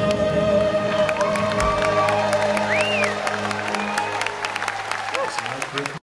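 The last held chord of the song fades out over the first few seconds as audience applause and cheering build, with a shout rising and falling about three seconds in.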